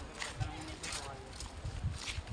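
Footsteps on a concrete walkway, about two a second, with wind rumbling on the microphone and voices nearby.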